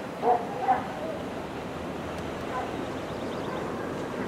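An animal's two short calls, about half a second apart, over a steady background hiss.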